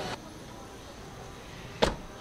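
A single short, sharp knock near the end, over a faint steady background hiss.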